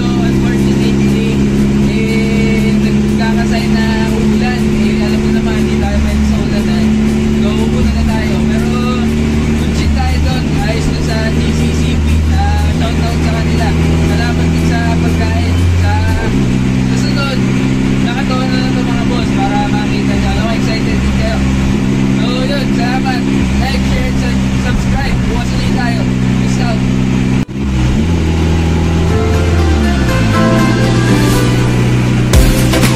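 Engine of a Toyota Corolla AE92 race car running while driving, heard inside the cabin, mixed with a man talking and background music. The sound cuts out briefly near the end.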